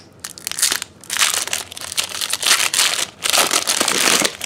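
Foil wrapper of a Pokémon booster pack being torn open and crinkled by hand: quiet for about a second, then crackling in several bursts with a short break a little after three seconds.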